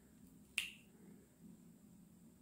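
A single sharp click about half a second in, from a small makeup product being handled in the hands; otherwise a quiet room.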